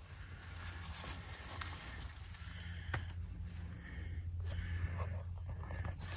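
Quiet outdoor ambience: a low steady hum under a faint hiss, with a few soft clicks.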